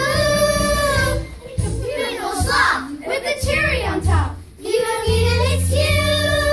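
Show-tune singing in children's voices over a recorded backing track with a steady bass. There is a long held note at the start, a livelier sung stretch in the middle, and another held note from about five seconds in.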